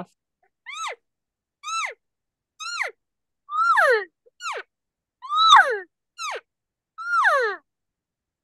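Elk calf calls blown on a diaphragm mouth reed, with a hand cupped at the mouth: about eight high, nasal mews in a row, each rising briefly and then falling sharply in pitch, some clipped short and some drawn out longer.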